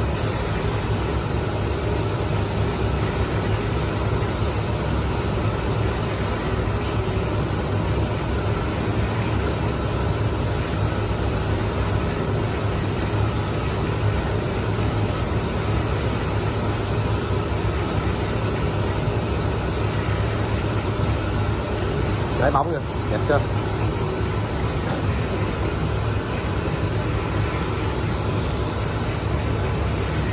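Gravity-feed compressed-air paint spray gun hissing steadily as it sprays paint, with a steady low hum underneath. A short higher-pitched sound cuts in about 22 seconds in.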